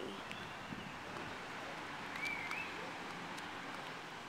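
Steady outdoor background noise of a city park, wind and distant traffic, with one short chirp about two seconds in.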